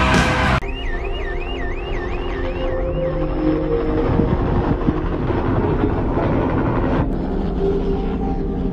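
Music cuts off abruptly about half a second in, giving way to an electronic siren warbling rapidly up and down, about three sweeps a second, for roughly two and a half seconds over a low, busy background.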